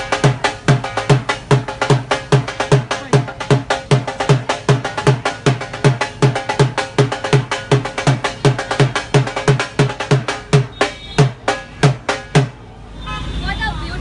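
Dhol, a double-headed barrel drum played with sticks, beaten in a fast, steady rhythm of deep bass thumps and sharper treble strokes. The drumming stops suddenly about twelve and a half seconds in, leaving a low engine rumble and voices.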